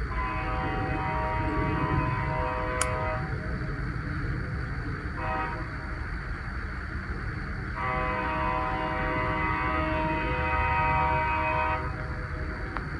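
A train horn sounds three blasts, one chord of several tones each: a long blast, a short one, then a long one that cuts off near the end. There is a steady low rumble underneath.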